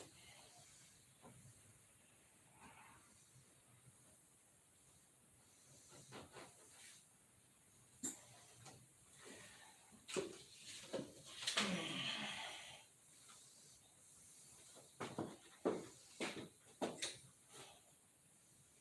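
Faint, scattered clicks and small handling noises from hands working on a model airplane, with a longer, louder noisy sound lasting about a second near the middle and a run of sharper clicks near the end.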